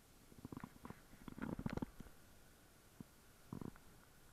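Faint, steady rush of a small rocky stream, broken by a few short, muffled rumbles, the loudest cluster about a second and a half in.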